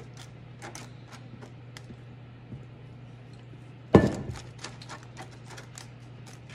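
Wooden spatula scraping pudding out of a stainless steel mixing bowl into a foil pan, with scattered light clicks. A sharp knock of kitchenware about four seconds in, followed by a few lighter taps, over a steady low hum.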